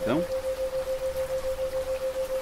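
Steady rain with a single steady tone at 528 Hz pulsing on and off about seven times a second: a 7 Hz isochronic tone.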